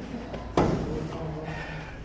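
A single sharp thud about half a second in, over the low voices of a group of people.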